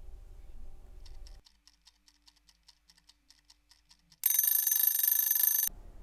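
A clock ticking fast and evenly, about six or seven ticks a second, then an alarm clock ringing loudly for about a second and a half: a time-lapse sound effect marking the dough's 40-minute rest as over.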